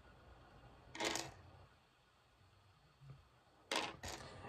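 Faint handling of small plastic action-figure accessories: a short click about a second in, a soft low knock near three seconds, and a sharper click just before the end as they are set down on a desk.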